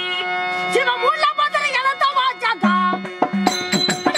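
Therukoothu theatre music: a held drone tone, then a singer's voice in a long, ornamented, pitch-bending melodic phrase, with drum strokes and sharp clicks coming in near the end.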